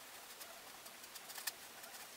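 Faint scratching of a paint brush's bristles dabbing oil paint onto canvas, a few short dry ticks with the sharpest about one and a half seconds in, over a quiet steady hiss.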